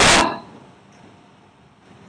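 One sudden, loud, short burst of noise right at the start, dying away within half a second, then a quiet hall's low room noise.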